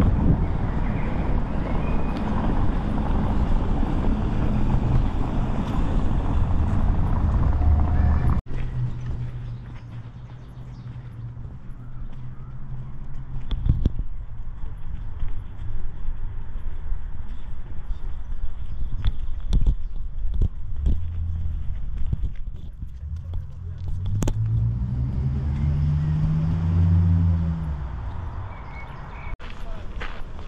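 Outdoor ambience recorded on the move, with a steady low rumble of traffic at first that stops suddenly about eight seconds in. Quieter open-air sound with scattered clicks follows, and near the end a motor vehicle passes, its engine note swelling and fading over a few seconds.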